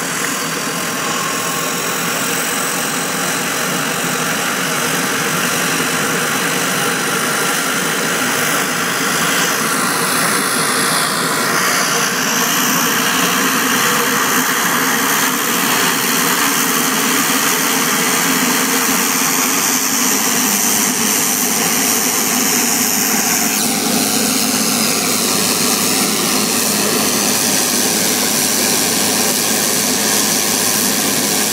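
Garrett turboprop engine of a Short Tucano T1 running just after start-up: a steady, loud turbine whine over propeller noise. The whine steps down in pitch about ten seconds in and shifts again about two-thirds of the way through, then slowly falls.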